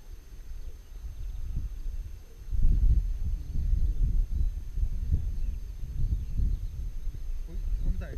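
Wind buffeting the camera microphone: a gusty low rumble that grows stronger about two and a half seconds in.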